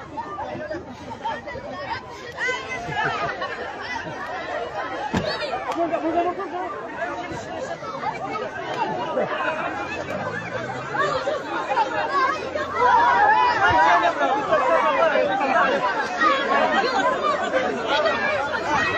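Crowd chatter: many people talking and calling out over one another, growing louder about two-thirds of the way through with shouts of "eh, eh, eh".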